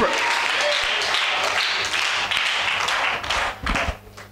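A congregation applauding, a dense steady clatter of many hands with some voices mixed in, ending in a couple of louder claps before it stops suddenly.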